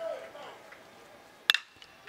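Faint ballpark ambience of a seated crowd, with one sharp crack about one and a half seconds in.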